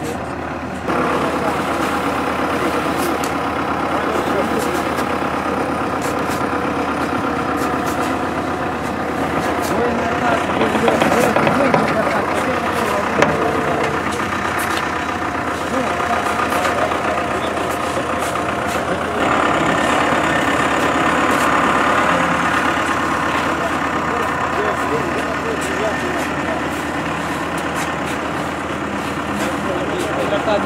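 Tractor diesel engine running steadily close by, with many people talking over it.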